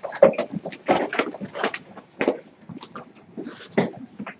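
Irregular knocks, scrapes and shuffling of students getting up from chairs and handling textbooks as they move about a classroom.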